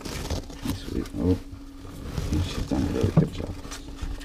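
Rustling and crinkling of newspaper bedding, with scattered knocks, as a reticulated python is pulled off her clutch of eggs. A few short, low-pitched sounds come about a second in and again near three seconds.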